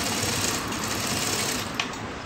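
Jack industrial single-needle sewing machine running steadily as it stitches a bias-cut fabric strip into piping, then stopping with a click shortly before the end.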